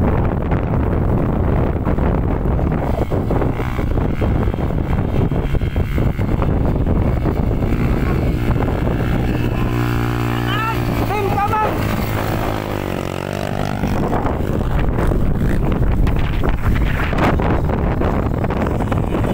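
Trail motorcycle engine running, with wind buffeting the microphone; the engine note comes through clearly about ten seconds in, and indistinct voices are mixed in.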